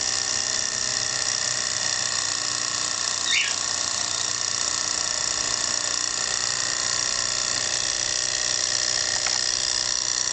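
Small model Stirling engine running steadily, its crank, piston and flywheel giving a fast, even mechanical rattle. A brief squeak about three seconds in.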